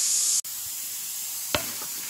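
Steam hissing steadily from the vent of a flameless heating cooker, whose water-activated heating pack is reacting under the pot: the normal venting of the heating reaction, not a fault. The loud hiss stops abruptly just under half a second in, leaving a fainter hiss, with a knock about one and a half seconds in.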